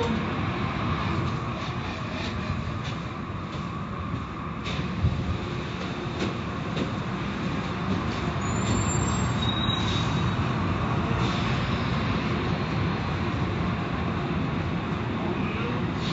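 Car wash running steadily, an even rushing noise with a few light knocks about five and six seconds in.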